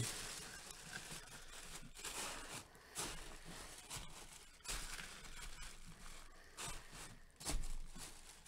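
Faint rustling and crinkling of packaging being handled, with a few soft knocks spread through.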